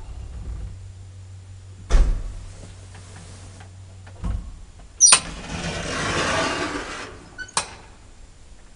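PH-Company hydraulic elevator at work. A low hum runs, with a heavy thump about two seconds in, and stops with another thump about four seconds in. About five seconds in a sharp clank is followed by roughly two seconds of the car door sliding, ending in a clunk.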